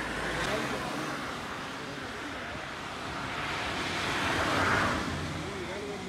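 A road vehicle passing: its noise builds to a peak about three-quarters of the way through and then eases off, over faint background voices.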